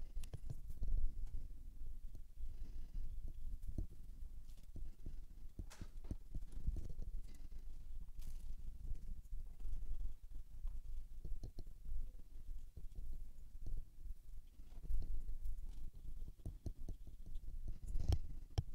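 Faint, irregular small knocks and taps of handling at a painting table while a brush works over watercolour paper.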